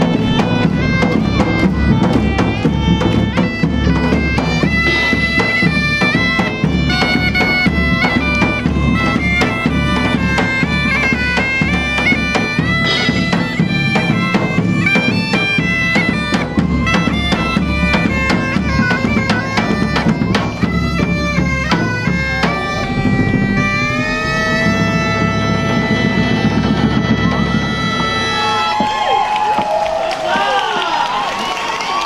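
German bagpipes playing a lively tune over their steady drone, backed by large drums struck in a regular beat with a cymbal. The drumming drops out about two-thirds of the way through, the pipes hold long notes, and near the end their pitch sags as the tune winds down.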